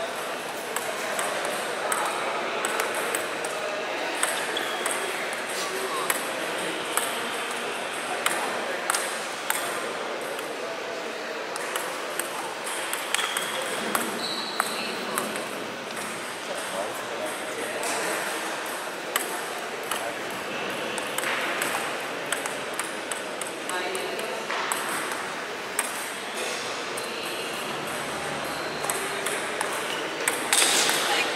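Table tennis ball being played back and forth: repeated sharp clicks of the ball off bats and table, coming irregularly throughout, over a background of people talking.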